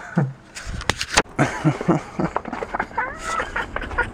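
A man laughing in runs of short pulses, rising into higher-pitched laughs near the end, with wind rumble on the microphone and a few knocks about a second in.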